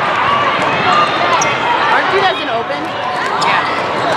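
Indoor volleyball court noise: many overlapping voices and shouts from players and spectators, sneakers squeaking on the court, and a few sharp smacks of the ball being played.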